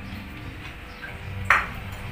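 A metal spoon striking a ceramic plate once, about one and a half seconds in: a sharp clink with a brief ring.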